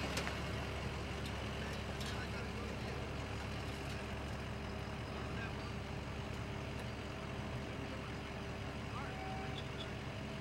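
Work truck engines running steadily at low speed. A truck passes close by at the start, and the sound then settles to an even engine hum.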